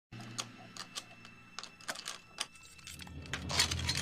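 Irregular small metallic clicks, about a dozen over three seconds, as a cartoon handcuff lock is worked open, over a low steady hum. A louder rush comes near the end as the cuffs come free.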